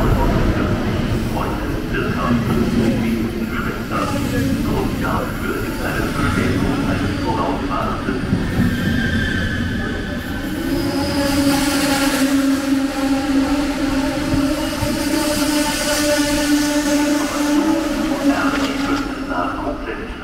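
ICE 1 high-speed train rolling into the platform and braking to a halt: a steady rumble of wheels and running gear, joined about halfway through by a sustained squeal that holds until the train stops near the end.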